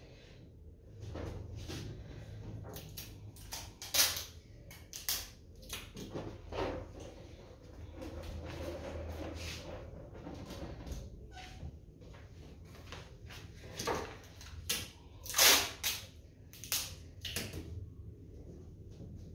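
Handling of rubber party balloons being fixed to a wooden cabinet: scattered short rustles and knocks, the loudest about four seconds in and in a cluster near the end, over a faint steady low hum.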